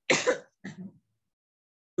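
A person clearing their throat: one short rough burst, followed by a weaker second one just after half a second in.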